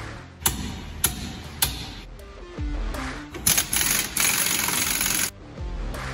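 Steel hand tools clink three times, about half a second apart, then an air tool runs loudly at the trailer's wheel hub for about two seconds, all over background music.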